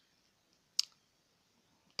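A single short, sharp click about a second in, otherwise a quiet pause with faint room tone.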